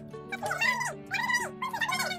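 Background music: sustained low chords changing every half second or so, with a high, wavering melody line in short rising-and-falling phrases above them.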